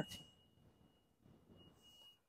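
Near silence, with a faint steady high-pitched tone.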